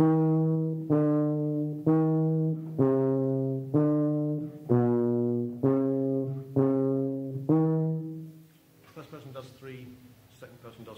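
Tuba playing a slow phrase of nine separately tongued, sustained notes, each about a second long and fading a little. The line dips lower in the middle notes and comes back up near the end.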